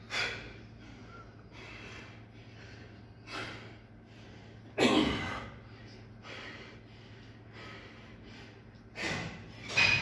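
A man breathing hard, out of breath from heavy deadlift drop sets: short, forceful breaths every second or two, the strongest about halfway through and another pair near the end.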